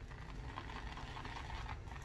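Faint, steady swishing of a badger shaving brush working water into shaving soap in a lather bowl.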